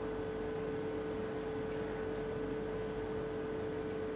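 A steady electrical hum: one constant mid-pitched tone with a fainter lower one over a low hiss, with only a couple of very faint ticks.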